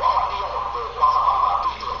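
A man speaking. His voice sounds thin and narrow, as if through a small speaker.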